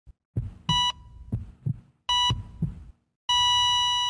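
Heartbeat and heart-monitor sound effect: paired low thumps with two short electronic beeps, then a long steady flatline tone about three seconds in, the sign of a heart stopping.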